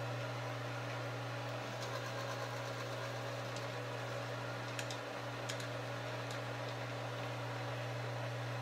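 Motor of a Frankford Arsenal Case Trim and Prep Center running with a steady low hum while a 5.56 brass case is held to its tooling, with a few faint ticks.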